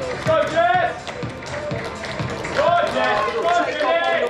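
Stadium public-address sound: a voice echoing around the stands over background music, in two drawn-out phrases.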